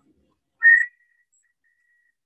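A high, steady whistling tone from an audio feedback loop between the live stream and the call. It jumps in loud about half a second in for about a third of a second, then keeps ringing faintly at the same pitch.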